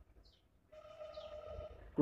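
A steady, even-pitched tone with overtones, held for just over a second in the second half, and faint high bird chirps.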